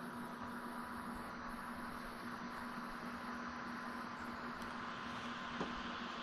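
Steady hiss with a faint constant electrical hum: the recording's background noise, with no distinct event, and a faint tick near the end.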